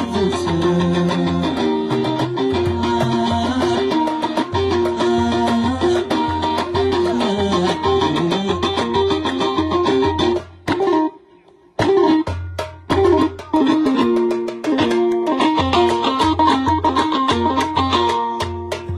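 Live music: a plucked string instrument plays a moving melody over a steady low drum beat, with sharp hand claps running through it. The sound drops out almost completely for about a second, roughly ten seconds in, then the music resumes.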